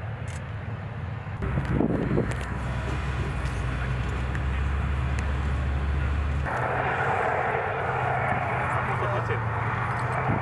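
Steady engine noise of military vehicles: a low hum that gives way abruptly, about six and a half seconds in, to a louder, broader rush of engine noise.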